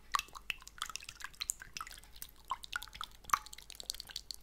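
Tongue fluttering with water from a bowl held at the mouth: an irregular run of small wet clicks and drips.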